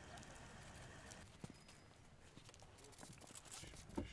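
Faint footsteps of hard-soled dress shoes on pavement: a few scattered steps over a low outdoor background, with a sharper click near the end.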